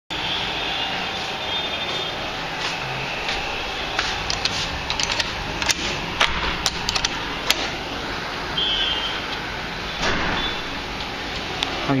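Steady rushing background noise, with a run of sharp clicks and knocks in the middle and a brief thin high tone a little later.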